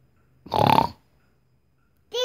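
A young child's single short, rough vocal sound, about half a second long, near the middle of an otherwise quiet moment.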